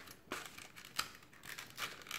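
Clear plastic blister pack crinkling and clicking as it is handled and pried at, hard to open, with a few sharp clicks, the loudest about halfway through.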